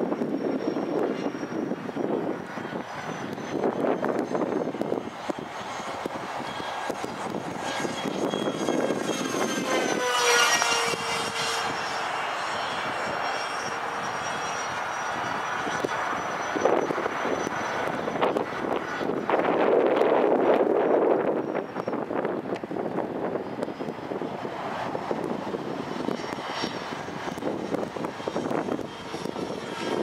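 Electric ducted fans of a radio-controlled A-10 model jet in flight: a steady rushing hiss with a thin high whine. The whine drops in pitch about ten seconds in, and the sound swells and fades as the model passes, loudest around ten and twenty seconds in.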